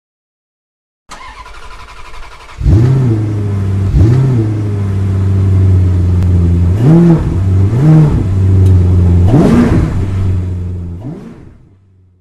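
Car engine starting about two and a half seconds in, then running with several quick throttle blips that rise and fall in pitch, fading out near the end.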